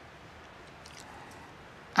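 Quiet room tone: a faint steady hiss with a few faint ticks about a second in.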